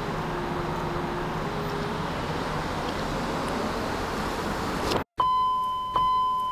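BMW X5 E53 electric window motor whirring as the door glass runs down and up in its freshly cleaned and lithium-greased guides, the whine dipping slightly in pitch and then rising again over the first two seconds, over a steady background hiss. Near the end the sound cuts off suddenly and a loud, steady electronic beep tone begins.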